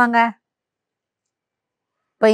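A woman's speaking voice that cuts off about a third of a second in, then dead silence for the rest.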